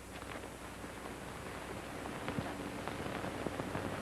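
Steady hiss with faint scattered clicks and crackles, growing slightly louder toward the end: the background noise of an old film soundtrack.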